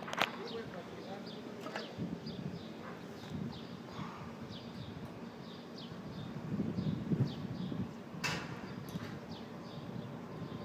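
A small bird chirping over and over, short high notes about twice a second, amid outdoor rooftop ambience. A sharp knock comes just after the start and another about eight seconds in.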